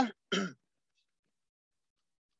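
A man briefly clears his throat right after speaking, followed by dead silence.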